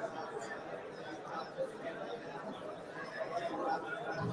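Indistinct background chatter of several people talking at once, with no one voice standing out.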